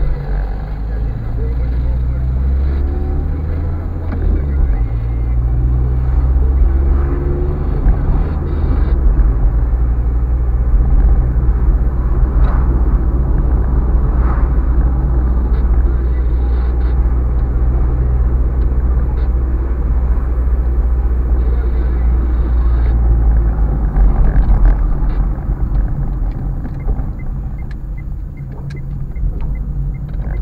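A car's engine and tyre noise heard from inside the cabin while driving through town streets: a steady low rumble that grows louder from a few seconds in and eases again near the end.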